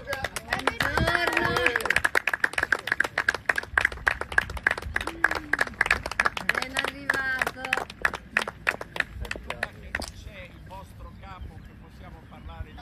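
A group of people applauding, with voices talking and calling out over the clapping; the claps thin out and stop about ten seconds in.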